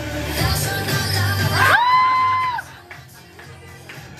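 Recorded pop song with a sung vocal playing for a drag performance; a little before the middle the voice glides up into a held note, then the beat and bass drop out and the music carries on much quieter.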